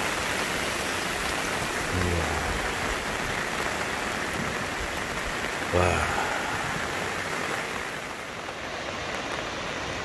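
Steady rushing noise of heavy rain and rain-swollen water: a stream running high, near to flooding the bridge.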